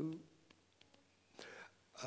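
A man's voice trails off, then a pause with a brief whisper about one and a half seconds in.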